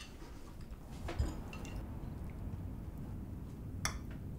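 Quiet room tone with a few light clicks of a fork against a plate: one about a second in and a sharper one near the end.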